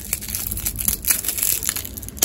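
Thin plastic straw wrapper from a drink carton crinkling and crackling as it is torn open and the straw is worked out, a dense run of small crackles.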